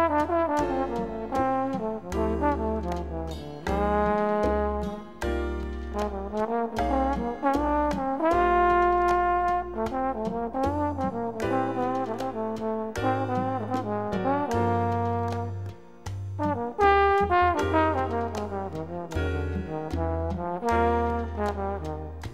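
Latin jazz band playing: brass horns carry the melody over a moving bass line and many short percussion hits.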